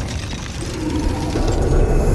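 A rapid run of small mechanical clicks and ratcheting, a gear-like sound effect from the animation's soundtrack.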